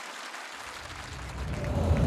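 A deep, low rumble begins about half a second in and swells steadily louder toward the end, over a faint hiss of crowd noise.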